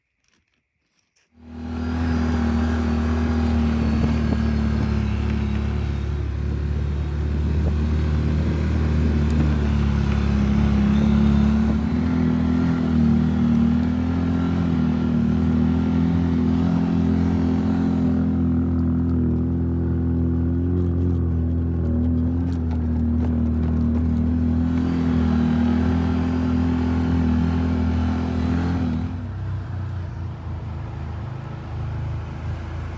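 ATV engine running steadily, heard from on board as it climbs a grassy hillside; the drone starts abruptly about a second and a half in and its pitch steps up slightly a little before halfway.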